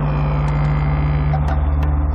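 Background score: a low, steady drone with a fast, even throbbing pulse.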